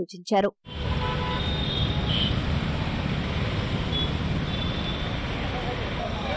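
Road traffic noise: a steady low rumble of motorcycle and car engines running close by.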